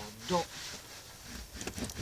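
A cloth wiping water off a ribbed rubber trunk mat: faint rubbing, with a few short scuffs near the end.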